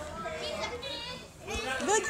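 Young children's voices chattering at play. A soft knock comes about one and a half seconds in, and at the end a child's voice rises into a loud, high call.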